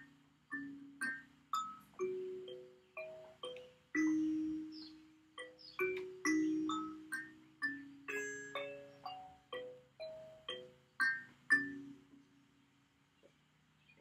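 Wooden kalimba (thumb piano) played by thumb plucks on its metal tines: single ringing notes that fade away, in a slow, unhurried melody of about two notes a second. The playing stops about two seconds before the end.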